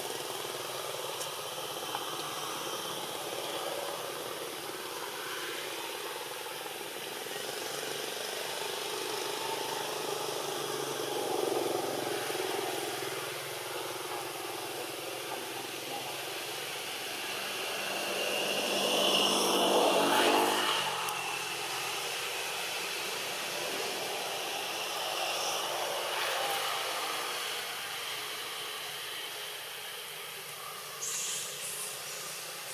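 A motor vehicle's engine running in the background, growing louder to a peak about twenty seconds in, dropping in pitch, then fading as it passes.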